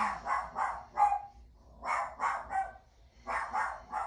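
A dog barking in three quick runs of three or four barks each.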